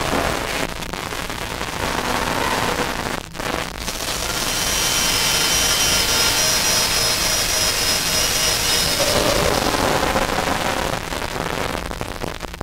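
Experimental electronic noise music: a dense hiss-like wash with faint held tones. It drops out briefly about three seconds in, then swells brighter, with high held tones over the noise.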